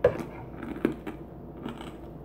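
A person chewing a mouthful of hard, crunchy cereal pieces in milk: a few short sharp crunches, one at the very start and a louder one just under a second in, with fainter ones near the end.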